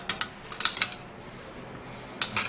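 Metal spoon clicking and scraping against a glass bowl while stirring a paste, a quick run of clicks in the first second that then stops.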